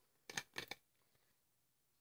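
A few faint clicks in the first second as a stainless steel base is fitted onto an upturned glass cold brew bottle; otherwise near silence.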